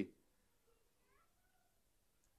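Near silence: room tone in a pause between sentences, with a very faint brief gliding sound about a second in.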